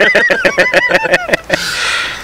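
A person laughing hard: a rapid, high-pitched run of about nine 'ha's a second, trailing off into a breathy exhale near the end.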